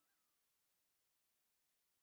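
Near silence: a faint fading tone in the first half second, then dead digital silence.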